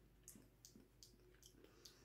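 Near silence with faint wet mouth clicks and lip smacks, about five in two seconds, from a person tasting a mouthful of creamy salad dressing.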